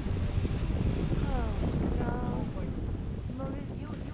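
Wind buffeting the microphone, a steady low rumble, with a few faint falling calls about a second in and again about two seconds in.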